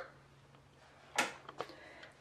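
Near silence with a faint steady hum, then one brief sharp click or rustle a little over a second in, followed by two faint ticks.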